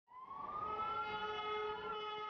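A siren sounding, its pitch rising over the first second and then holding, with a steady lower tone underneath.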